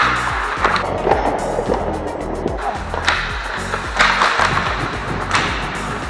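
Hockey skate blades scraping and carving on ice, with several sharp scrapes, over background music with a steady beat.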